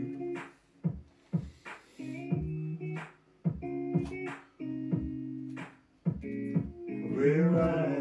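Guitar music in a break between sung lines: chords held for about a second and cut off short, with sharp strokes in the gaps between them.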